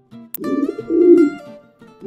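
A pigeon cooing once, a low warbling coo, over soft background music. A sharp click comes just before the coo.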